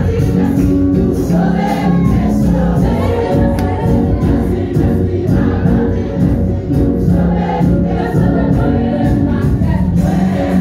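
Gospel worship music: a choir singing over steady instrumental accompaniment, continuous and loud.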